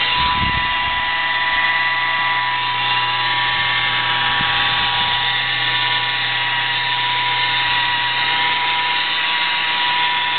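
Corded electric polisher with a foam pad running continuously against a car door panel, a steady high whine with a low hum, as paint sealer is buffed onto the clear coat.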